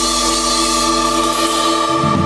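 Instrumental jam-band music: a sustained chord held by guitar and keyboards, with a hiss-like wash above it. Bass and drums come back in right at the end.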